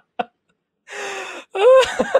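A man laughing hard: the last staccato laugh, a brief pause, then a wheezing gasp for breath about a second in, followed by a loud, high-pitched burst of laughter.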